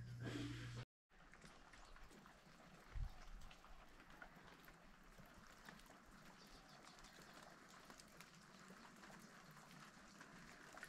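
Near silence: the faint patter of light rain dripping on foliage, with a soft low thump about three seconds in. A low room hum in the first second cuts off suddenly.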